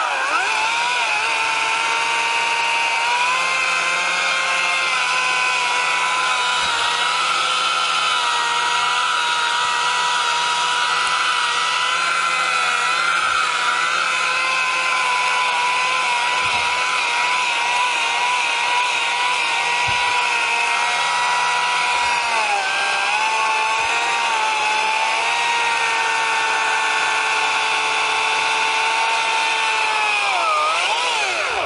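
Chainsaw running at high revs as it labours through a hard, dead pine trunk, its engine pitch sagging briefly at the start and about two-thirds of the way through as it bogs under load. The wood is so hard-going that the cut smokes.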